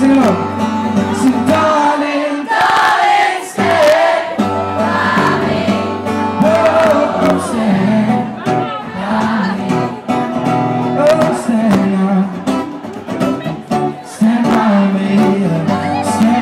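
Male singer performing a song live, his voice carried over a strummed acoustic guitar through a small venue's PA.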